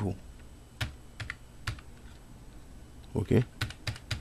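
A few separate keystrokes on a computer keyboard, single key presses a fraction of a second apart in the first two seconds, as an IP address is typed.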